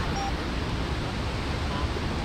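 Steady outdoor wind noise on the microphone: an even hiss over a low rumble, with no distinct events.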